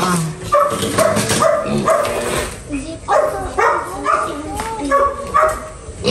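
Piglets in plastic crates squealing, a run of short, repeated calls about two a second that rise and fall in pitch.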